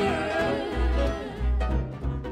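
Live jazz band: a saxophone playing a wavering melodic line over deep double bass notes.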